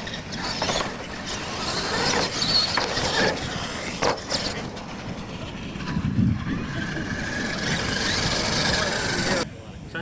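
Radio-controlled monster trucks racing on dirt, their motors whining and rising and falling in pitch as they speed up and slow down. The sound cuts off suddenly near the end.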